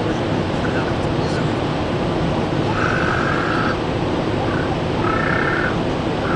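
Steady road and engine noise inside a car cabin at motorway speed. A short high tone sounds twice, about three seconds in and again near the end.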